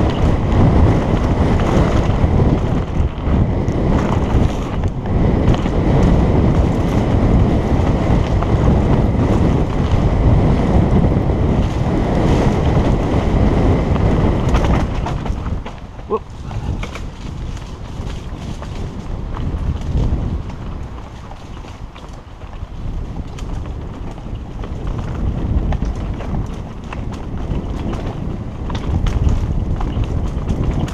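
Wind buffeting a helmet-mounted camera's microphone and tyres rumbling over a dirt trail as a mountain bike descends at speed. The rush eases about halfway through, then builds again near the end.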